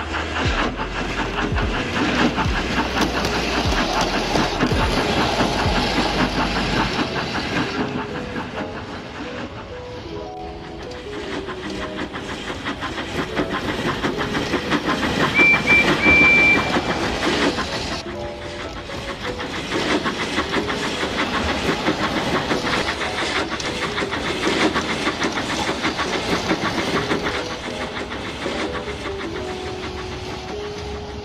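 Background music with a melody playing over the running sound of a G-scale model steam locomotive (a Bachmann Percy) and its tank wagons on track. A short high whistle tone sounds about halfway through.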